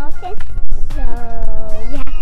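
A young girl's voice drawing out a long "so..." over background music with a steady low beat.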